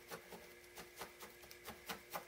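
Faint, quick soft clicks of a felting needle stabbing into red wool on a burlap-covered pad, about four stabs a second.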